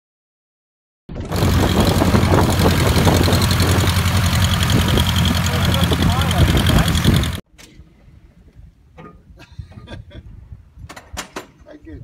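An Aeronca 11AC Chief's piston engine and propeller run at taxi close by, a steady low drone that starts after about a second of silence. It cuts off suddenly a little past halfway through, and only faint clicks and knocks follow.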